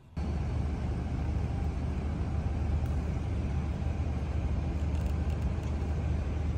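Steady low rumble of outdoor street ambience at night, like distant road traffic. It starts abruptly just after the beginning and stays even throughout.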